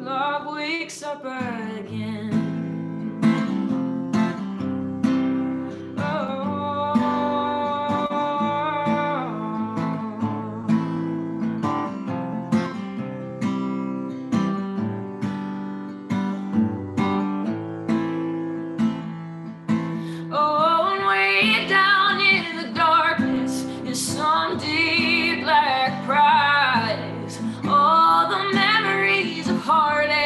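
Acoustic guitar played solo in an instrumental break, individual notes and chords ringing. About twenty seconds in, a woman's singing voice comes back in over the guitar.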